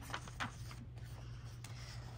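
A page of a paper picture book being turned by hand: a few faint paper rustles and scrapes over a steady low room hum.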